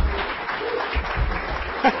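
Audience applauding, a dense patter of many hands clapping, with a man's laugh and speech starting near the end.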